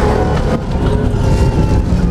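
Suzuki Grand Vitara cross-country rally car's engine running steadily at speed, heard from inside the cabin over the low rumble of the car on a dirt track.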